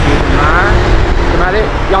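A man speaking over the steady low rumble of street traffic passing close by.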